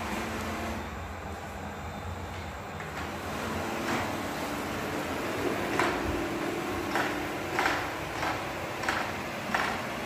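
Robot vacuum cleaner running, a steady motor and brush whir, with several short knocks or taps in the second half.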